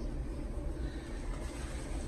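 Steady low rumble of background noise with a faint hiss above it, unchanging and with no distinct events.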